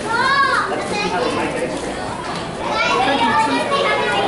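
Many people talking at once in a large, busy hall, with children's voices among them; a high voice rises and falls in a short call near the start.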